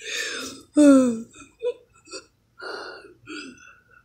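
A person's voice: a breathy gasp at the start, a short falling vocal sound about a second in, then a few faint breathy noises.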